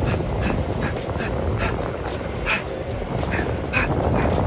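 Electric skateboard rolling over asphalt with a steady low rumble of wheels and wind on the microphone, broken by a run of short, sharp puffs at irregular intervals: the rider's breath as he throws punches while riding.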